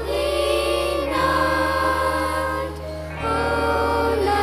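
Children's choir singing in unison over held low accompaniment notes. The low notes change about a second in and again near the end, and the singing dips briefly just before that second change.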